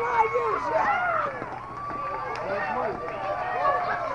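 Several distant voices calling and shouting over one another with no clear words, some held as long calls.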